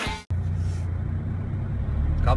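The end of music cuts off abruptly, then a car's road and engine noise is heard from inside the cabin while driving: a steady low rumble.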